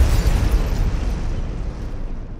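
Cinematic explosion sound effect for a logo sting: a deep boom that has just hit, its rumbling, noisy tail fading slowly.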